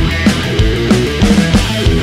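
Instrumental hard rock music: distorted electric guitar and bass over a steady, driving drum beat.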